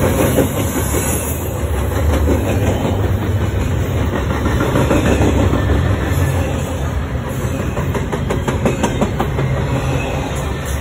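Double-stack container well cars rolling past at speed: a loud, steady rumble of steel wheels on rail, with sharp wheel clicks coming more often in the second half.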